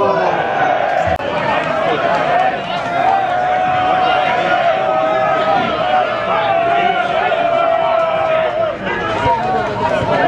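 Football crowd voices from the stand: supporters chant together, holding one long drawn-out note for most of the time, over general shouting and chatter.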